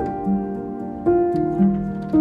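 Slow, gentle piano music: single notes and chords sounding every half second or so, each held and ringing into the next.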